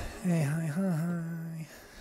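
Track playback cuts off with a click. Then a man hums a short wordless "mm-hmm"-like phrase for about a second and a half, its pitch dipping and rising twice.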